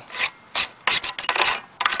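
Paint scraper scraping caked dirt and grass out of the underside of a lawn edger's blade housing: a quick run of short, uneven scraping strokes, about half a dozen.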